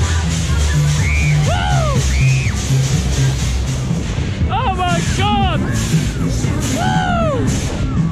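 Loud dance music over a fairground ride's sound system, with a heavy bass line, and voices whooping over it several times, most of them in the second half.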